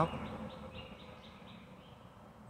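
A wild creature's call: a run of about seven short, high chirps, about four a second, fading away.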